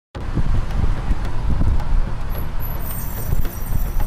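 Outdoor road traffic and street noise: a steady low rumble that surges unevenly.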